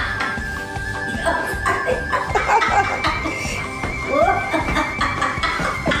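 Background music with long held high notes, with a woman laughing over it.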